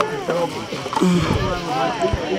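People talking, with the words indistinct.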